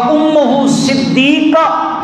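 A man chanting a Quranic verse in Arabic in melodic recitation, with long held, gliding notes in two phrases, the second beginning about one and a half seconds in.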